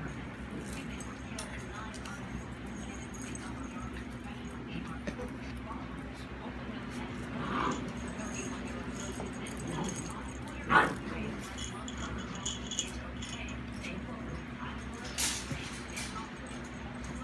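Golden retriever puppies giving a few short whimpers and yips, the loudest a sharp yip about eleven seconds in, over a steady low hum.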